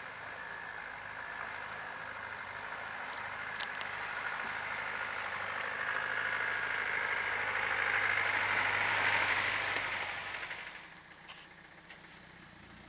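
Land Rover Defender's engine running as it drives through deep flowing water on a flooded lane, with the rush and splash of water around the wheels. The sound grows louder as the vehicle comes close, peaks near the end, then drops away sharply.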